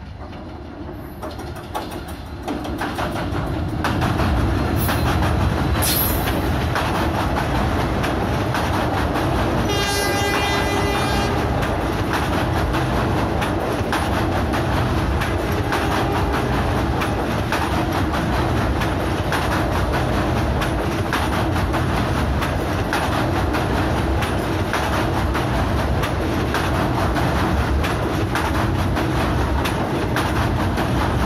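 An EMD-built WDP4 diesel-electric locomotive, a 16-cylinder two-stroke, approaches and passes at speed, its engine noise building steeply over the first four seconds. About ten seconds in comes a horn blast lasting over a second. The ICF passenger coaches then roll past with a steady clatter of wheels on the track.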